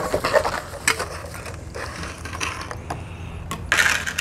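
Bubble wrap and plastic packaging crinkling and rustling as wrapped metal brackets are pulled out of a cardboard box, with irregular clicks and rattles. The loudest crackle comes near the end.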